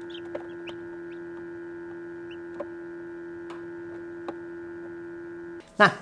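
Newly hatching chicks peeping inside an incubator over the steady hum of its fan, with a few sharp taps. The peeps are short and high and come in ones and twos.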